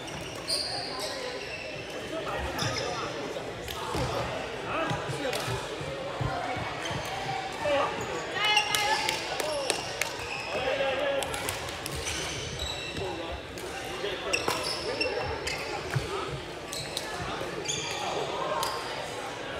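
Badminton rackets hitting shuttlecocks in rallies on several courts: frequent, irregular sharp hits, with shoes squeaking on the court floor and people chattering.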